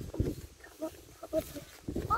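Young children's voices in short, faint snatches, with a few low thuds.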